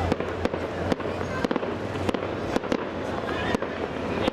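Aerial fireworks going off, a rapid, irregular run of sharp bangs and cracks.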